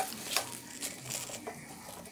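Wooden spatula stirring spinach in a stainless steel wok with a little boiling water: a quiet stirring sound with a few light taps of the spatula.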